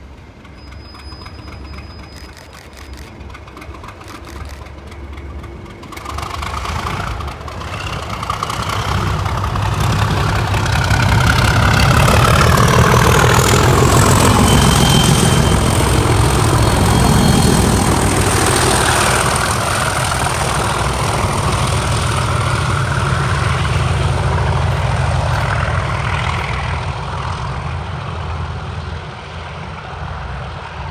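Class 37 diesel locomotives hauling snowploughs pull away and pass close by with their engines working hard. The sound swells to a peak around the middle, the engine tones dropping in pitch as they go by, then eases off. A high whistle rises over the first half and then holds steady.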